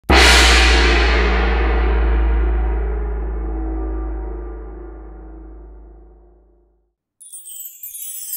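A single deep gong strike that rings on with many overtones and dies away over about seven seconds. After a moment's silence, jingle bells start jangling near the end.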